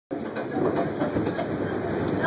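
A New York City subway car on the A line running along the track, heard from inside the car: a steady rumble and rattle of the wheels on the rails.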